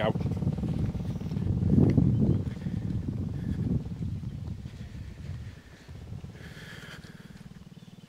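A small motorbike engine runs as the bike moves along a dirt track, rising briefly about two seconds in. It then eases off and fades, dying away near the end.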